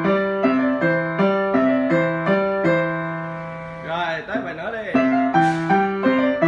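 Upright acoustic piano played by hand, a steady run of notes about two a second that stops on a held, fading note about three seconds in, then picks up again about five seconds in.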